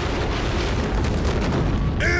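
Sound effect of a massive eruption: a loud, continuous explosion-like rumble with heavy bass, as a huge cloud of smoke bursts up.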